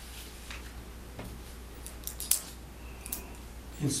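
Papers being handled at a meeting table: a few short crackles and clicks, the loudest a little past two seconds in, over a steady low electrical hum.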